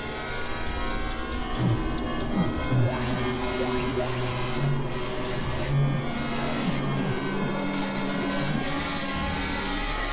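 Experimental electronic synthesizer music: a dense drone of many held tones, with low notes shifting every second or two.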